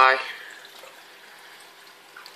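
A spoken word at the very start, then a faint steady hiss of running water, the circulation of a reef aquarium.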